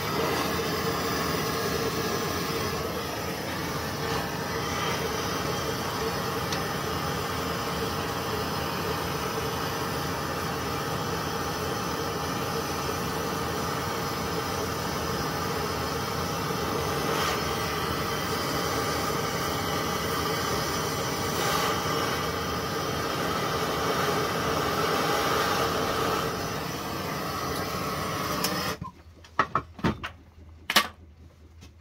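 Hose-fed gas torch burning steadily with a rushing hiss as it heats copper pipe and brass fittings for soldering. The flame is shut off suddenly near the end, followed by a few sharp clicks.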